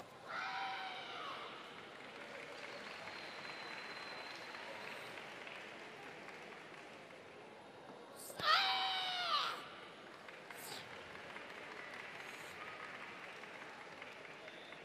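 A female karateka's kiai shouts during the kata Unsu: one short shout right at the start and a louder, longer one about eight and a half seconds in. The shouts stand over a faint steady hall murmur.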